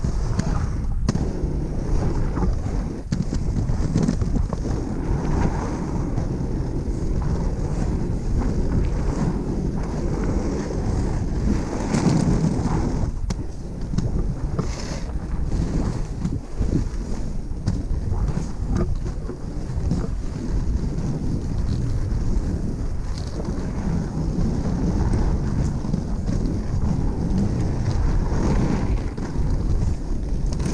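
Wind buffeting the camera microphone, mixed with the rumble of 110 mm triskate wheels rolling over asphalt.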